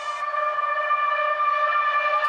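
One long, steady horn-like note, held at an unchanging pitch with only a slight wobble near the end.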